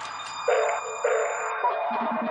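Deep dubstep in a DJ mix, at a sparse moment: a few high ringing tones held over two low hits about half a second apart.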